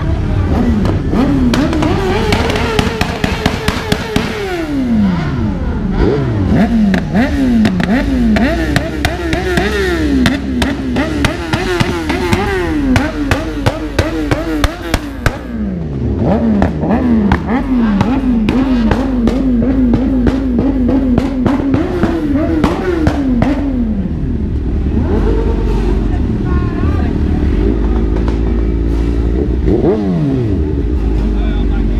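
Sport motorcycle engine revved hard. It is held high for a couple of seconds near the start, then falls away, then is blipped up and down in quick repeated revs with sharp crackling pops for much of the time. It settles to a steadier, lower running sound in the last few seconds.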